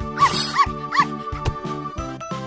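Three quick dog barks, a sound effect, over steady background music with a beat.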